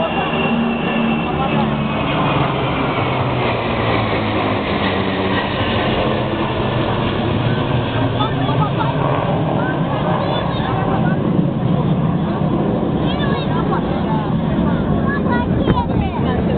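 Jet engines of an Il-76-based aerial tanker flying over in formation with smaller jets: a steady noise of engines passing overhead, with voices of a crowd beneath it.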